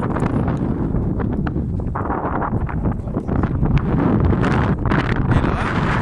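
Wind buffeting a phone's microphone: a loud, steady rumbling roar, with a few short clicks over it.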